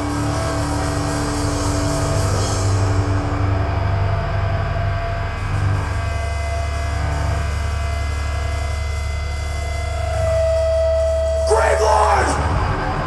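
Live thrash metal band's amplified electric guitars and bass holding low notes that ring on, with thin steady tones above them. Near the end comes a short burst of strummed guitar and cymbal.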